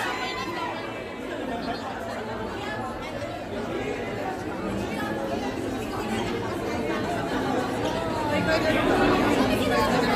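Crowd chatter: many voices talking over one another at once, getting somewhat louder near the end.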